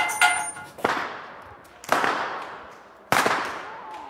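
Long rope whips cracking in a steady string, a sharp crack about every second, each trailing off in a long echo.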